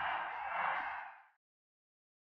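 A large stadium crowd cheering in a short burst of about a second and a half that stops abruptly.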